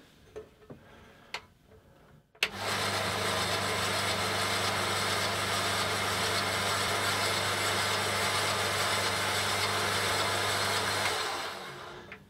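Burgess BBS-20 Mark II three-wheel bandsaw switched on with a click about two seconds in, running steadily with no load: a low motor hum under the whirr of the blade and wheels. It is switched off near the end and winds down. This is a first test run on a freshly fitted blade, and it runs without trouble.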